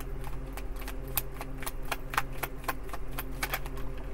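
Tarot cards being shuffled by hand: an irregular run of light clicks and snaps of card edges, several a second, over a low steady background hum.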